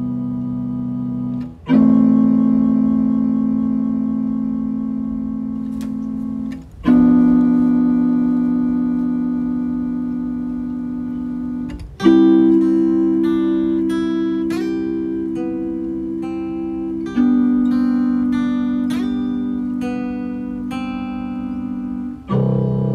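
Instrumental passage of an emo song: a guitar chord struck about every five seconds and left to ring and fade, with single plucked notes picked over it from about halfway.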